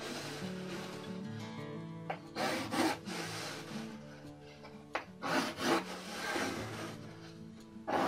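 Pencil scratching short strokes across a plywood board in a few brief bursts, over steady background music.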